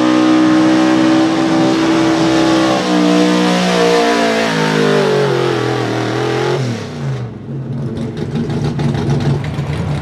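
Unlimited-cubic-inch Outlaw 4x4 pulling truck's engine at full throttle under the sled's load. Its pitch holds, then falls steadily for several seconds as the truck bogs down at the end of the pull. About seven seconds in, the sound changes abruptly to a lower, rougher engine rumble.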